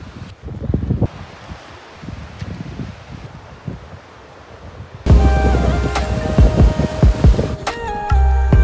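Wind rumbling unevenly on the microphone for about five seconds. Then background music cuts in suddenly and louder, with a deep bass and held notes.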